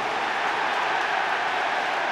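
Football stadium crowd cheering steadily just after the home side scores a goal.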